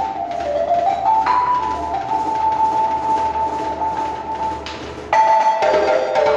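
Live acoustic West African ensemble: a violin sliding up into a long held high note over light djembe hand drumming, then about five seconds in the balafons come back in loudly with a run of struck wooden-bar notes.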